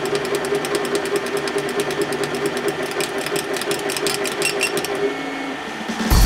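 K40 CO2 laser cutter's stepper-driven head sweeping back and forth as it raster-engraves a rock: a steady motor whine with fast, evenly spaced clicks at each change of direction, several a second. The whine drops to a lower pitch about five seconds in.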